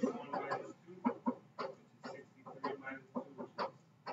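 A person laughing in short, irregular chuckles after a spoken phrase.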